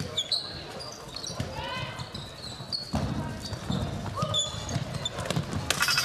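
Handball play on an indoor wooden court: the ball bouncing with low thuds, shoes squeaking in short high chirps on the floor, and voices of players and crowd in the hall.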